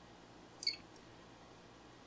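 A DC electronic load gives one short, high beep about half a second in as its ON button is pressed, switching on its 50 W load.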